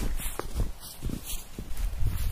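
Footsteps of rubber boots wading through deep, fresh snow, about two steps a second, each a soft thud with a crunching swish of snow.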